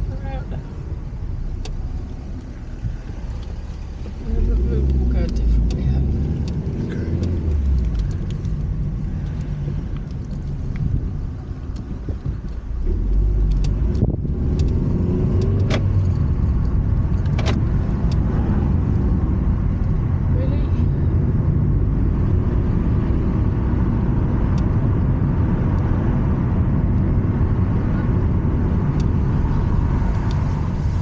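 Car interior noise while driving: a steady low engine and road rumble inside the cabin. It gets louder as the car pulls away about four seconds in, and again around twelve seconds, then holds steady, with a few light clicks.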